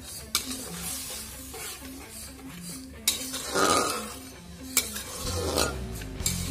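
Metal spatula stirring and scraping chopped greens in a little oil in an aluminium pan, knocking against the pan three times, with a low sizzle. A longer, louder scrape comes a little past the middle.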